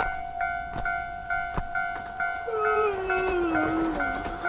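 Japanese railway level-crossing warning bell ringing in a steady repeating ding, about two to three strikes a second. About halfway through, a long, slowly falling wail joins in.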